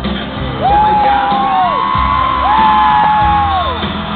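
Live bachata band music with long, high held vocal cries over it. There are two of them, starting about two seconds apart, each sliding down at its end.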